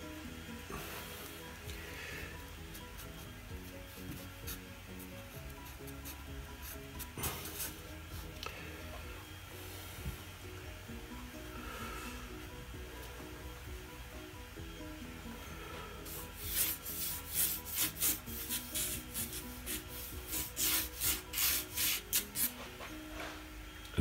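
Sharpie permanent marker rubbing across watercolour paper. Light strokes come first, then about two-thirds in a quick run of short, scratchy strokes, about two a second, as lines are dashed in. Quiet background music plays underneath.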